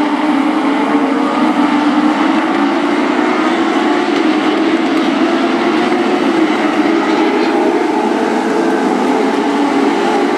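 A pack of Legends race cars running flat out together, their engines making a steady, dense drone. Several engine pitches slowly shift against one another as the cars run in traffic.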